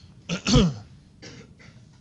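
A man coughing: two quick coughs about half a second in, the second the louder, then a weaker one just after the middle.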